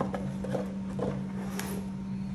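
A few light knocks and scuffs of cardboard sunglasses boxes being pushed aside and set down on a stone countertop, over a steady low hum.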